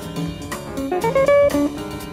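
Small-group jazz: an archtop electric guitar plays a rising phrase of quick single notes over drum kit cymbals, with the same figure recurring about every two seconds.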